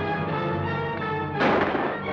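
Orchestral film score playing, with a single loud gunshot about one and a half seconds in.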